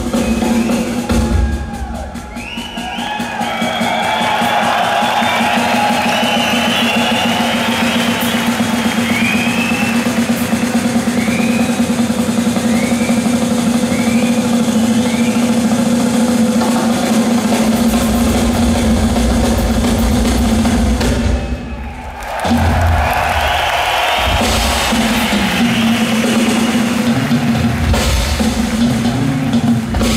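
Rock drum kit played solo, loud fast rolls across snare and toms, heard through an arena PA from the audience. The playing thins out briefly twice, and heavy bass-drum strokes come in about two-thirds of the way through and again near the end.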